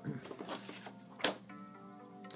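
Cardboard box flaps and paper rustling as a shipping box is opened, with one sharp crinkle a little past a second in. Faint background music with held notes comes in about halfway through.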